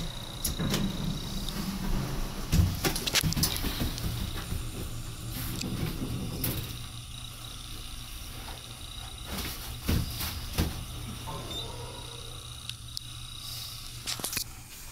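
Hydraulic elevator cab riding down one floor: a steady low hum with scattered clunks and knocks from the car and its doors.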